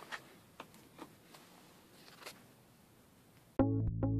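A few faint, sharp clicks and knocks of a metal clamp on a boat's engine bay cover panel being worked by hand. Near the end, music starts suddenly and is much louder.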